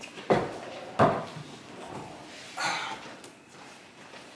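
Two sharp knocks about two-thirds of a second apart, then a short rustle about a second and a half later.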